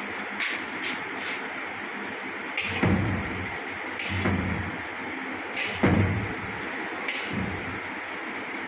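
A metal palette knife scraping and knocking against a steel tray as whipped cream is scooped up. There are a few light clicks at first, then four louder scrapes about a second and a half apart, over a steady background hiss.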